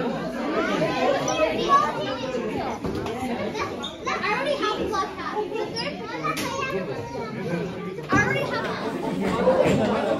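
Children playing amid the overlapping chatter of many voices in a large hall.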